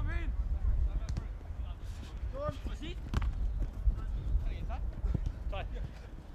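Players' shouts across an outdoor football pitch and a few sharp thuds of the ball being kicked, over a constant rumble of wind on the microphone.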